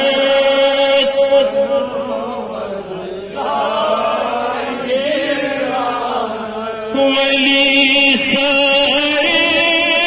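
A man chanting a naat (Islamic devotional poem) through a microphone, holding long, wavering, ornamented notes. The voice is softer through the middle and rises again about seven seconds in.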